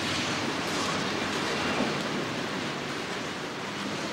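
Steady rush of city street ambience, mostly distant traffic, easing off slightly toward the end.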